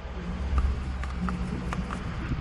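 A few light, scattered metallic clicks from a socket working a triple-square bolt loose, over a steady low rumble.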